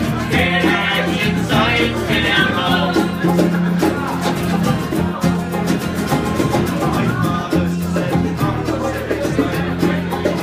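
Irish traditional session band playing a ballad: acoustic guitars and a banjo strumming along with a steady beat, with voices singing over them.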